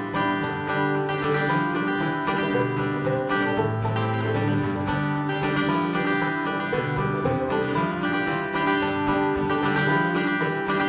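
Live acoustic folk music with no singing: a mandolin picking over two acoustic guitars playing steadily.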